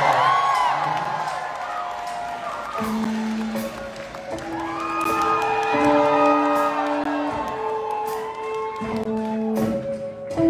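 Audience cheering and whooping that dies down over the first couple of seconds, then a live rock band starting a song with long held instrument notes moving slowly from pitch to pitch.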